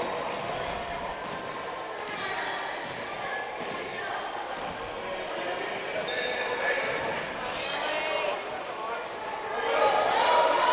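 Gym sounds of a basketball game in play: a basketball bouncing on the hardwood court and players' and spectators' voices, echoing in a large hall.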